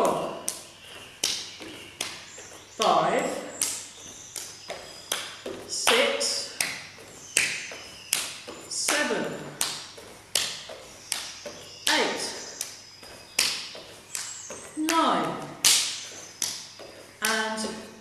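Sharp slapping taps, about three a second, from a barefoot leg exercise on a wooden floor. A woman's voice speaks briefly about every three seconds, keeping count.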